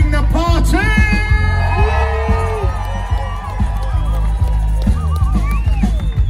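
Live reggae band playing with a heavy, steady bass; a long held melodic lead note comes in over it about a second in.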